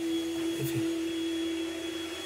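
A steady single-pitched machine hum that holds level and then stops just before the end, with a faint high whine under it.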